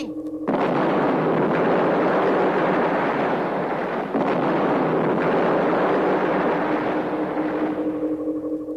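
Rocket-blast sound effect of a cartoon spaceship's retro rockets firing: a loud rushing noise that starts suddenly about half a second in, dips briefly around the middle and tails off near the end.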